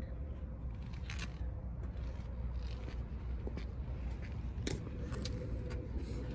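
Low steady background rumble with a faint hum, broken by a few soft clicks and rustles from the phone being handled while the person carrying it moves.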